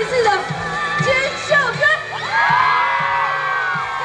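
A woman singing a pop song live into a microphone over a band with a steady beat, amplified through the PA; she holds one long note through the second half.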